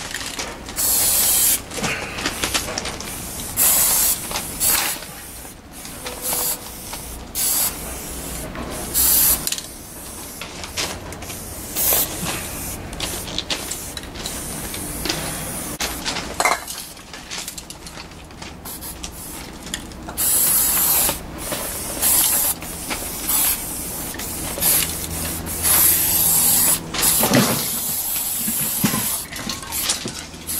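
Aerosol spray paint cans hissing in repeated short bursts, each from about half a second to two seconds long, as two painters spray at once. There are quieter handling sounds and short clicks between the bursts.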